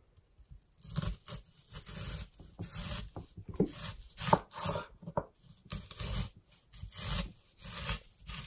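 Kitchen knife slicing a raw onion crosswise into rings on a wooden cutting board: a crisp slicing cut through the onion layers about once a second, starting about a second in.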